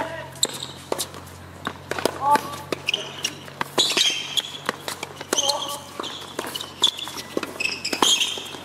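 Tennis balls struck by racquets and bouncing on an outdoor hard court in a rally, a string of sharp pops and knocks, with short high squeals of tennis shoes on the court surface.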